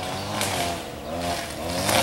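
An engine running in the background, its pitch rising and falling twice.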